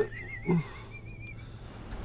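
A short chuckle about half a second in, over a faint, high wavering whistle-like tone that fades out after about a second and a half.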